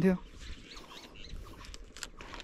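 Faint crisp rustling and small scattered clicks of a head of cabbage being handled and trimmed, its leaves crackling. A voice ends just at the start.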